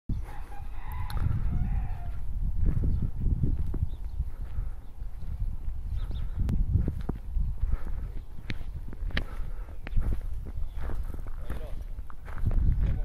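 Gusty rumble of wind and handling on a phone microphone outdoors, with scattered light clicks and knocks, and a brief high call about a second in.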